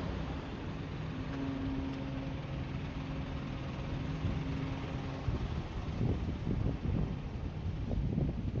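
A motor vehicle's engine running with a steady hum and a held tone. From about five seconds in, wind buffets the microphone with uneven low rumbles.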